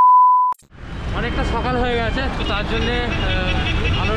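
A steady 1 kHz test-tone beep, the sound of a TV colour-bars test pattern, cuts off with a click about half a second in. Then comes steady road and traffic noise with a voice over it.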